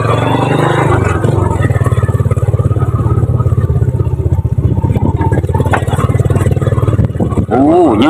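Small motorcycle engine running steadily as the bike rolls along.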